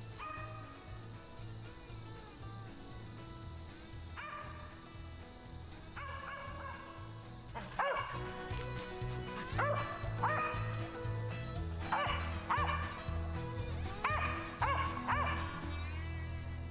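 Mountain cur barking treed at the base of a tree, the bark that signals a squirrel treed. The barks start faint and get louder about halfway through, coming roughly one or two a second, over background music with a steady beat.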